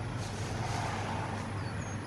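Steady low background hum with an even wash of noise and no voices.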